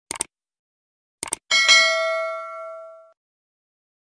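Subscribe-button animation sound effects: a short click, then a quick double click about a second later, followed by a bright bell ding that rings out and fades over about a second and a half.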